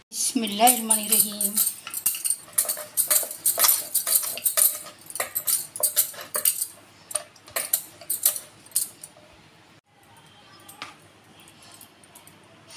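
Wooden rolling pin rolling out puri dough on a wooden board, with quick clicks and knocks and the jingle of metal bangles on the rolling hand with each stroke, from about two seconds in until about nine seconds. A brief voice sound comes in the first second or so.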